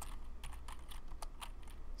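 Typing on a computer keyboard: a quick run of irregular keystroke clicks as a name is entered at a terminal prompt.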